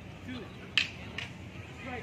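Two sharp clacks about half a second apart, the first much louder, over faint distant voices.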